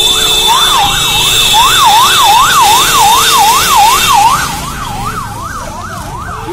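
Vehicle siren sweeping quickly up and down, about two and a half sweeps a second. A steady high-pitched tone and hiss sound with it and stop about four seconds in.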